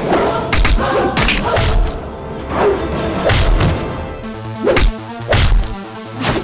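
Fight-scene sound effects: a quick string of loud punch and kick thuds and whacks, about eight in six seconds, some with a whoosh of a swing, over background action music.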